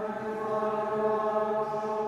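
A group of voices chanting Vespers in unison on one held note, ringing in a large, reverberant church.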